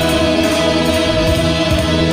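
A woman singing a long held note over a karaoke backing track.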